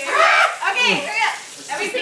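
High-pitched human voices talking and exclaiming in quick, overlapping bursts, with a brief lull before they pick up again near the end.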